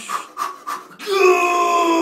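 A man panting in short breaths, then a long, loud straining groan from about a second in, its pitch slowly falling: vocal effort during a lift.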